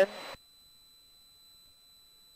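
A man's last word ends right at the start, followed by a brief hiss, then near silence.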